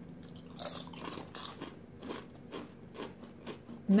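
Two people biting into and chewing kettle-style potato chips close to the microphone: a run of irregular crisp crunches.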